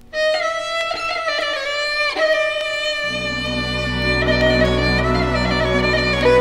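Instrumental passage of an orchestral song: a violin plays the melody, starting right after a brief hush. Low sustained accompaniment joins about three seconds in.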